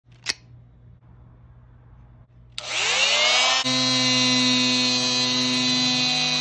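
A click, then about two and a half seconds in an oscillating multi-tool is switched on: its motor whine rises in pitch over about a second and settles into a steady high whine as the toothed blade cuts into the rubber sidewall of a tire.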